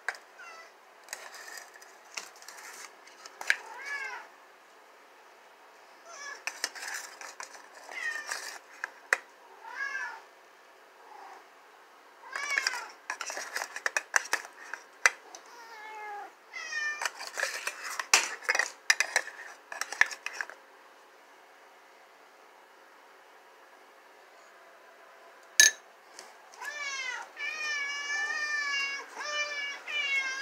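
Cats meowing over and over, many short rising-and-falling meows from more than one cat begging to be fed while wet cat food is spooned into a bowl. A sharp clink of the spoon on the dish comes about three-quarters of the way through, and near the end there is a longer, wavering meow.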